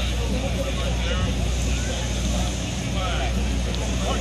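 Distant voices of players and coaches on a practice field over a steady low rumble.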